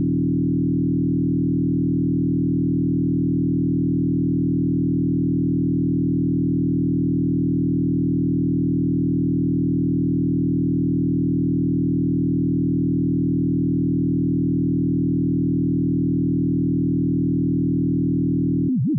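Pure Data FM synth patch: a 220 Hz sine-wave carrier frequency-modulated by a 40 Hz sine oscillator with 100 Hz of deviation, giving one steady low tone with many stacked overtones up to about 500 Hz that holds unchanged throughout.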